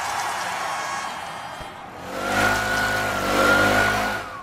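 A hissing rush that fades over about two seconds, then a small car engine running steadily from about two seconds in, its pitch wavering slightly.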